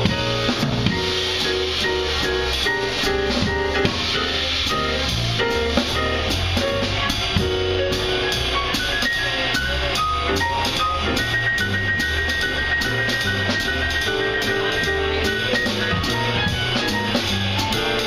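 A live jazz band of electric guitar, electric bass, keyboard and drum kit playing an instrumental number, with the drums keeping a steady cymbal beat under the melody.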